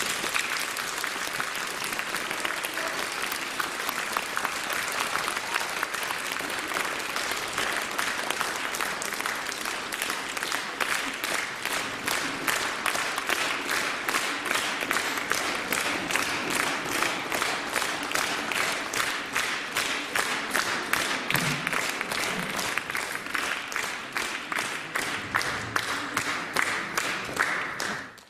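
Audience applauding after a performance ends: a dense wash of clapping that about ten seconds in settles into rhythmic clapping in unison.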